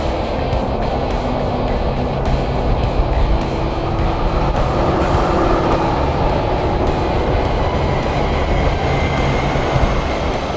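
Steady rumble of road and traffic noise at highway speed, heard from a vehicle driving alongside a semi-truck, with music playing over it.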